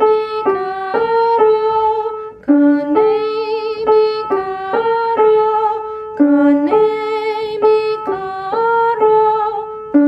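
A woman singing one short, slow phrase of a minor-key Latin American folk song and repeating it, each time starting on a low note and stepping up, with light vibrato on the held notes. A new run of the phrase begins about every four seconds.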